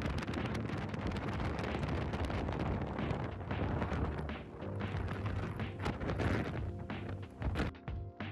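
Strong wind buffeting the microphone over rough, crashing surf, a dense rushing noise, with background music faintly underneath. The wind noise cuts off suddenly just before the end.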